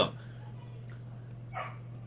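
A pause in speech filled by a low, steady hum, with one brief faint sound about one and a half seconds in.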